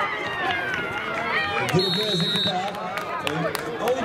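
Children and adults shouting across a youth football pitch, with a short, high referee's whistle blast about two seconds in and a few sharp knocks.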